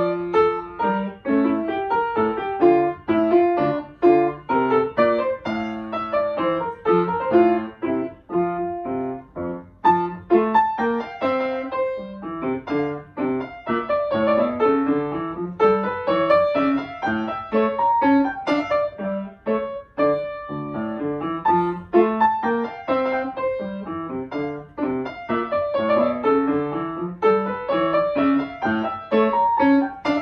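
Solo grand piano played in a steady stream of quick notes, with several rising runs.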